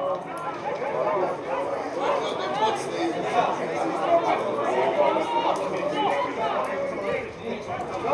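Several people talking and calling out over one another, a steady overlapping chatter of voices with no single clear speaker.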